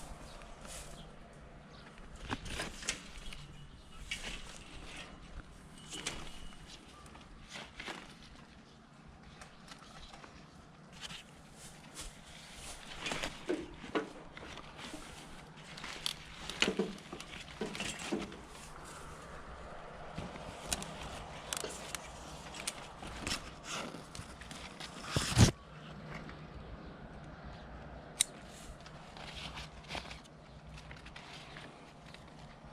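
Grapevine shoots and leaves rustling and snapping as they are handled, with scattered sharp clicks from hand pruning shears. One sharp knock near the end is the loudest sound.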